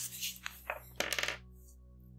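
Felt-tip marker scratching across paper in a few quick strokes, then a short sharp clatter a little past halfway as the marker is put down on the table.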